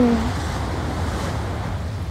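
Steady wind rumbling on the microphone outdoors, a low, even hiss with no speech, after a brief murmured 'un' right at the start.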